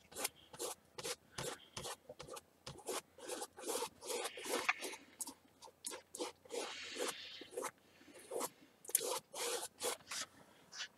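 A wide flat brush scrubbing paint onto stretched canvas in quick dry-brush strokes, about three scratchy strokes a second.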